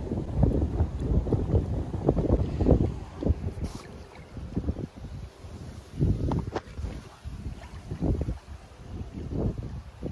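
Wind buffeting the microphone in uneven gusts, heaviest in the first few seconds and surging again later.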